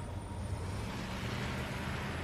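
A steady low rumble with a hiss over it, like distant traffic or room ambience, growing slightly louder.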